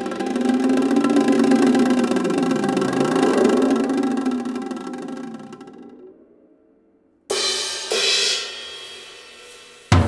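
Solo percussion playing: a dense rolled drum sound, its pitch dipping and rising again around the middle, fades away to near silence. Then come two sharp strikes with bright metallic ringing about half a second apart, and a hard drum stroke right at the end.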